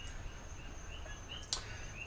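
A quiet pause with a faint background hum and a string of soft, short chirps repeating a few times a second, with one brief click about three quarters of the way through.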